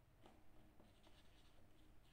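Faint scratching of a pen writing a word on paper, in short strokes.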